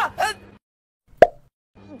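A man's short shout of "Ah!" at the start. Then, a little over a second in, a single sharp pop, the loudest sound here.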